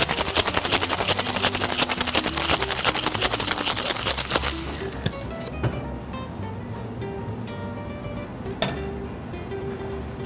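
Ice rattling in a cocktail shaker, shaken hard in a fast, even rhythm for about four and a half seconds and then stopped, over background music. A few single knocks follow.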